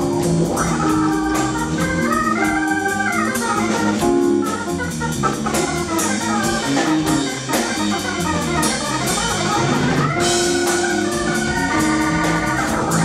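Live instrumental trio: an organ-toned keyboard playing held chords and quick stepwise runs over an extended-range multi-string electric bass and a drum kit.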